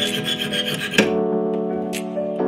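Background music, with a hacksaw blade rasping across a steel nail for about the first second; the rasping stops abruptly with a sharp click, leaving only the music.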